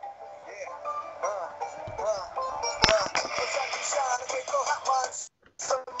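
A short music clip with a singing voice, played back on the show as a ten-second joke 'medicine'. It sounds thin, with little bass, and drops out briefly about five seconds in.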